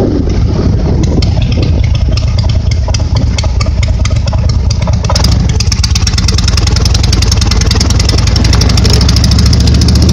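Motorcycle with sidecar running on the road, its engine drone under heavy wind noise buffeting the microphone; a higher hiss grows louder about halfway through.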